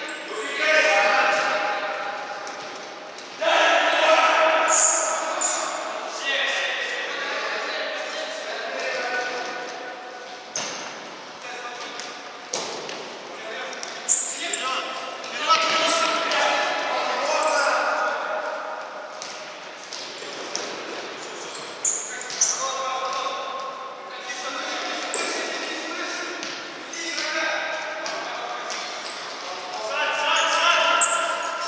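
Players shouting to each other across an echoing sports hall, with several sharp thuds of a futsal ball being kicked and striking the wooden court floor.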